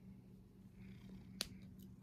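Domestic cat purring faintly and steadily, close to the microphone. A single sharp click about one and a half seconds in.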